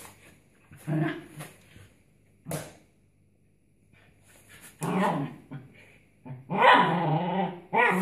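A dog barking in a few short bursts, then a louder, drawn-out bark lasting about a second near the end.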